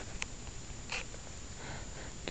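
Four-week-old gray squirrel kit giving a few short, faint squeaks, the clearest about a second in.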